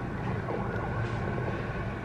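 Steady low background rumble with no clear events.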